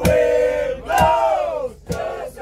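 A group of people singing loudly together, with hand claps in time about once a second.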